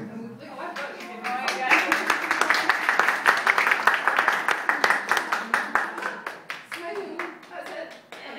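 A roomful of people clapping together: it starts about a second in, swells quickly and dies away near the end, with voices over it.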